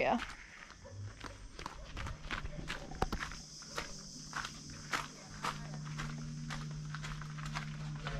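Footsteps walking along a concrete walkway, about two steps a second, with a steady low hum joining about five seconds in.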